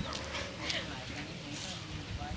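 Faint whimpers from a small long-haired dog, with a few soft scuffing noises.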